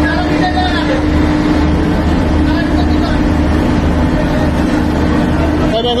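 Fishing boat's engine running steadily, with a constant hum and a regular low pulsing throb underneath, and faint voices in the background.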